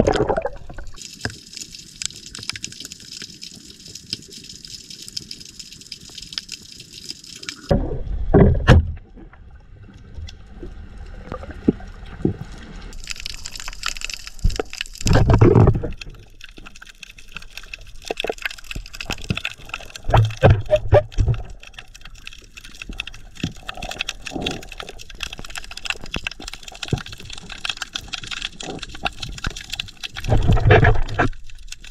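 Underwater water sounds through a submerged camera: a muffled rush and bubbling, with a high hissing in the first several seconds and a few low, muffled thumps spread through, the loudest about eight and fifteen seconds in.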